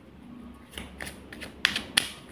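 A handful of short, sharp taps and clicks from a deck of tarot cards being handled against a table, coming in the second half.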